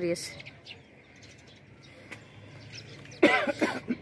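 Faint outdoor background, then a short burst of a woman's voice a little after three seconds in.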